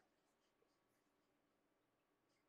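Near silence: faint room tone with a very faint steady hum.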